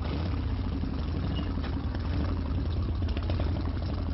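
Harley-Davidson motorcycle engine running steadily with a low engine note.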